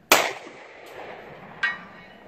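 A single 9mm pistol shot from a Canik TP9V2, sharp and loud, then about a second and a half later a short, faint metallic ring: the 'dong' of the bullet striking the steel target at 240 metres.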